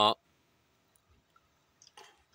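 A drawn-out spoken "a" ends just after the start, then near quiet with a few faint, short clicks, a small cluster of them near the end.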